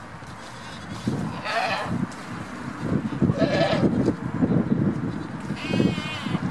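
Goats bleating three times, calling after their keeper as he walks off: about a second and a half in, again midway, and once more near the end. A low rustling runs underneath.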